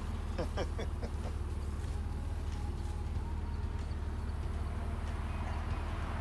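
A steady low rumble, with faint voice fragments in the first second.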